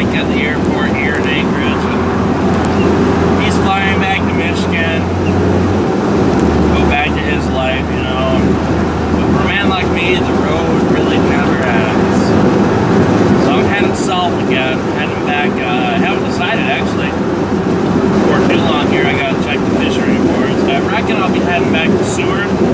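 Vehicle engine running with a steady low hum, heard inside the cab; the hum shifts lower about six seconds in.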